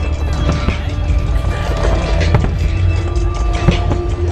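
Fireworks display: aerial shells bursting with a few sharp bangs and crackle over a continuous low rumble, with music playing at the same time.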